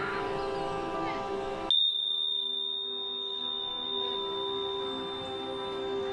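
Meditation singing bowl and bell ringing: a steady low ring with several overtones. About two seconds in, a single sudden strike starts a high, clear ring that lasts several seconds.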